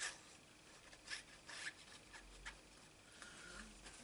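Faint short scrapes and rustles: the nozzle of a liquid glue squeeze bottle drawn along a cardstock flap, and the card being handled, a handful of brief strokes in the first couple of seconds.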